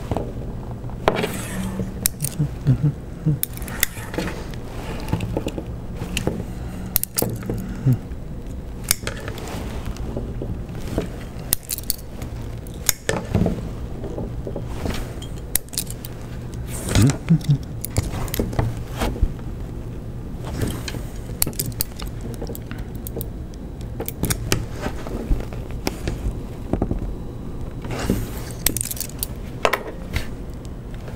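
Nylon zip ties being cinched tight around linear bearings with locking pliers (a vice grip): irregular clicks and small metallic clatters of the pliers and ties.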